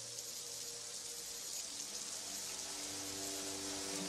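Faint, rain-like hiss with low sustained tones swelling in over the second half: the quiet ambient opening of a song, before any instrument is played.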